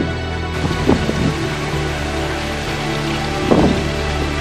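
Steady rain hiss with short rolls of thunder, one about a second in and a louder one near the end.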